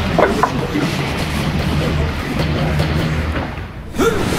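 Outdoor city ambience: a steady low rumble like traffic or engines, with faint distant voices and scattered small knocks. It fades down just before the end.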